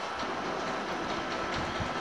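Steady background noise, an even hiss with a low rumble and a faint high steady tone, in a pause in the talk.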